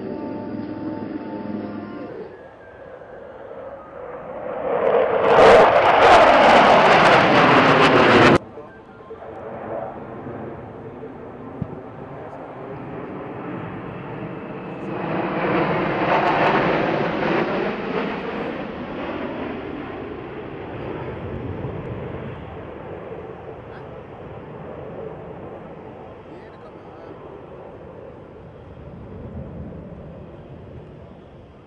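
Twin-engine Sukhoi fighter jets passing at close range: jet noise builds over a few seconds and cuts off suddenly about eight seconds in. Then a formation flies over, its sound swelling to a peak and slowly fading away.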